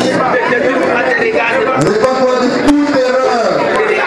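Many people praying aloud at the same time, their voices overlapping, with a few sharp clicks among them.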